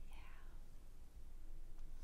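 A woman's brief breathy sigh at the very start, then only faint room hum.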